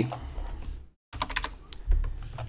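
Computer keyboard typing: a quick run of keystrokes in the second half as a short ticker symbol is typed in.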